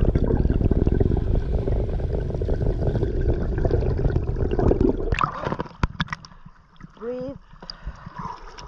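Muffled rushing and bubbling water heard underwater as a freediver rises along the line, thick with small crackles. About five seconds in it thins to lighter splashing at the surface, and near the end there is a brief voiced sound from the diver.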